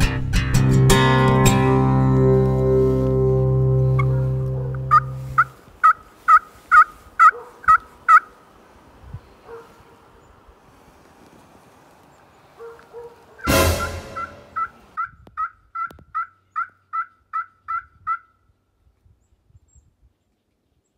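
Backing music with plucked guitar fades out about five seconds in. Then a wild turkey yelps in a quick, evenly spaced run of about eight notes, a short loud burst follows some seconds later, and a longer run of about a dozen yelps comes near the end.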